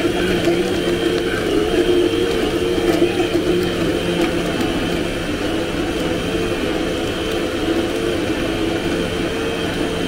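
Countertop blender motor running continuously as it blends a thick smoothie, with a tamper worked through the lid. The motor's pitch wavers up and down in a steady rhythm as the load shifts.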